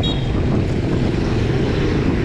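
Wind rumbling steadily on the microphone of a handlebar-view camera on a moving road bicycle, mixed with road noise. A brief high tone sounds right at the start.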